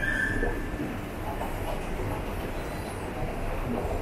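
Escalator running with a steady mechanical rumble, and a short high squeal at the very start.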